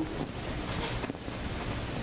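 Soft rustling of papers being looked through, over a steady hiss.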